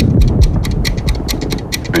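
Trailer sound-design ticking: rapid, evenly spaced clock-like ticks, with a deep low boom near the start.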